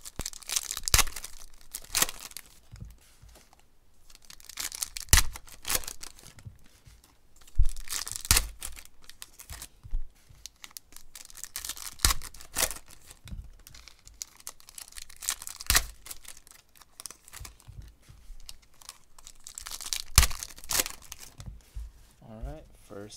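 Foil trading-card packs being torn open and crinkled by hand, in irregular rips, with a few sharp taps as cards are set down on a stack on the table.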